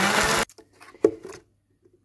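Countertop blender running on blackberries and soaked raisins, blending them into a sauce, then cutting off about half a second in. A brief knock follows about a second in.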